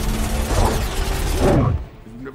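Movie battle sound effects of Mechagodzilla and Kong fighting: heavy metallic clanking and grinding, with two falling groans, cutting off sharply near the end.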